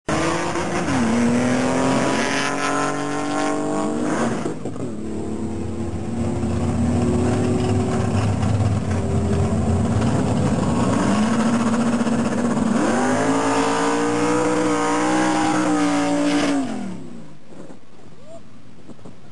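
Chevrolet Camaro's engine revving hard at the start line, its pitch held high, dipping and climbing again, with a long high-rev stretch near the end that cuts off suddenly.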